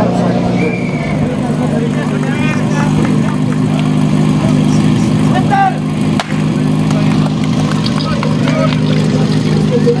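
Portable fire pump engine running steadily at a low, even pitch, with voices over it. A brief click about six seconds in.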